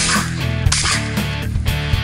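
Two shotgun shots from an over-under shotgun, the first at the very start and the second under a second later, mixed under rock music with strummed electric guitar.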